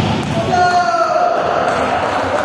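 A long shout from a player, held and slightly falling in pitch, over faint volleyball hits. It echoes around a large indoor sports hall.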